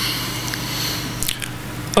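Steady electrical hum and hiss from the lectern microphone's sound system, with a few faint short clicks in the second half.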